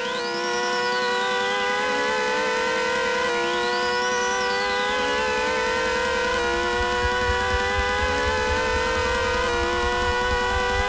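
Small hand-cranked siren wound up into a microphone twice, each time a quick rising wail that slowly falls away as it spins down. Beneath it, a layer of electronic tones rises slowly, and a low pulsing beat comes in about seven seconds in.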